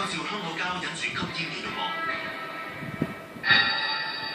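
Television programme sound heard through a TV speaker: a man's voice over background music, then a loud musical sting starts suddenly about three and a half seconds in.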